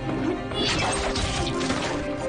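Action-film soundtrack: music under fight sound effects, with two noisy hits about halfway through and near the end, including a crash as a body slams to the ground.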